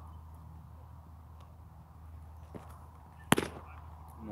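A single sharp crack about three seconds in: a pitched baseball striking at home plate.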